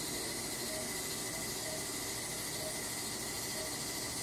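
Steady hiss at an even level, with a faint thin high tone held throughout and a few faint short beeps scattered through it.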